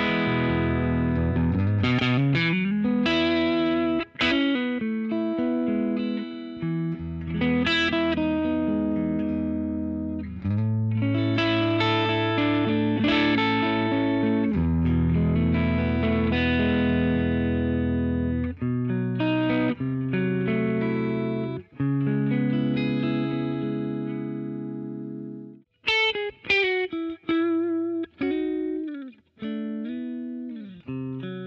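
Heritage H-535 semi-hollow electric guitar played through its neck 225 humbucker, strumming chords that ring out and change every second or two. About 26 seconds in, the playing switches to short, choppy stabs with brief silences between them.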